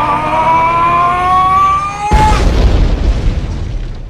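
A man's long held yell, rising slowly in pitch, cut off about two seconds in by a loud explosion sound effect whose boom then fades away.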